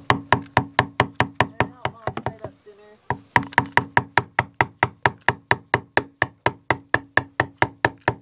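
Claw hammer tapping a chisel in quick light strokes, about four or five a second, each with a short ringing note, as the chisel trims the welded-corner bead off a vinyl window frame. The tapping breaks off for about a second midway, where a voice is faintly heard, then goes on.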